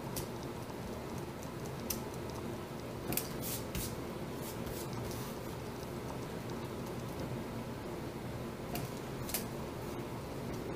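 A pen-style eraser rubbing pencil marks off kraft cardstock, over a faint steady room hum. A few sharp light taps and clicks come through: a cluster a few seconds in and two more near the end.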